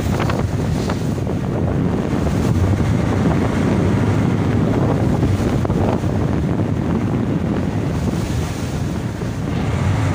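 Wind buffeting the microphone and waves washing around a small boat on open sea, with a steady low rumble underneath.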